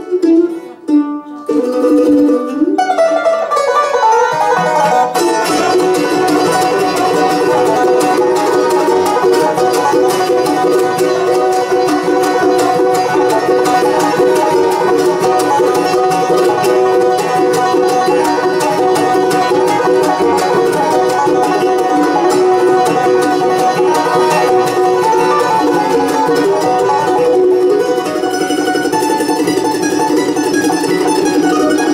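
Live bluegrass band playing an instrumental: a mandolin leads off nearly alone in the first few seconds, then banjo, acoustic guitar and upright bass come in and the full band plays on steadily.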